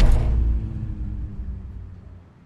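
Deep boom of a logo-reveal sound effect: a sudden hit that dies away slowly as a low rumble over about three seconds.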